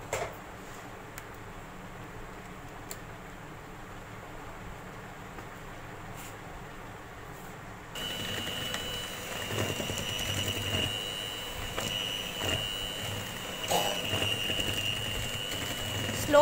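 Westpoint electric hand mixer switched on about eight seconds in, its motor giving a steady high whine as the beaters churn powdered sugar and oil in a plastic bowl, with occasional knocks. Before that there is only quiet handling and room sound, with a click at the start.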